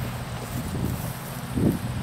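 Wind buffeting the microphone, with a couple of soft low thuds near the end.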